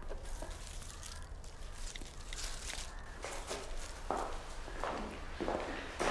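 Soft footsteps on a wooden floor, a few even steps in the second half, over a quiet room hum.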